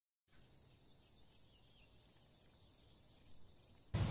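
Faint, steady high-pitched chirring of crickets in the open air, starting a third of a second in after complete silence.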